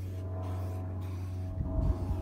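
Aerosol can of matte tan spray paint hissing in short strokes with brief pauses about every half second, over a steady low hum. A few low bumps near the end.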